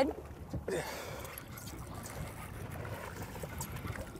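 Seawater sloshing and splashing against a boat's side where a hooked fish is being pulled alongside, a steady low wash.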